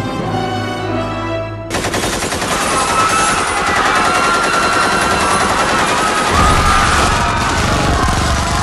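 Rapid automatic gunfire sound effect, a dense continuous stream of shots, cutting in suddenly about two seconds in over music; a deeper rumble joins near the end.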